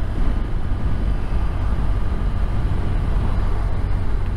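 Motorcycle under way at a steady pace: a steady low engine drone mixed with wind and road rumble.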